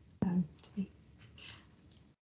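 A single sharp click about a fifth of a second in, right before a soft murmured "um", then a few faint breathy sounds.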